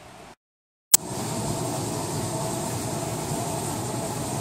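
Treadmill running: a steady motor whine over the rumble of the moving belt, starting abruptly with a click about a second in.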